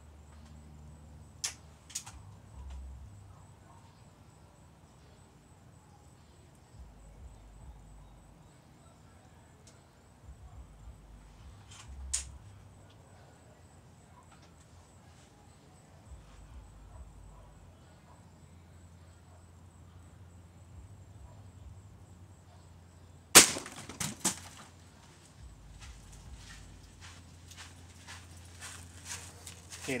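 A single air rifle shot with a Daisy pointed pellet, sharp and sudden, about three quarters of the way in, followed within a second by two knocks as the pellet strikes the water bottles and they fall over. A few fainter clicks come earlier and just before the end.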